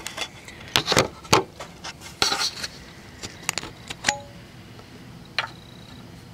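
Clicks and clinks of a turn-signal bulb and its socket being worked loose and pulled out by hand. A quick run of sharp clicks comes in the first couple of seconds, a few more follow about three to four seconds in, then only light handling.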